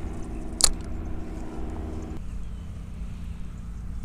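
Wind rumbling on the microphone, with a steady low hum that drops away about two seconds in and a single sharp click just under a second in.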